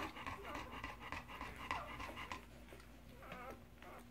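A yellow Labrador retriever, mother of a three-day-old litter, panting softly and rhythmically, fading near the end.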